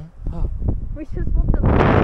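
Wind buffeting the microphone on an exposed hilltop: a steady low rumble that swells into a louder, hissing gust about one and a half seconds in.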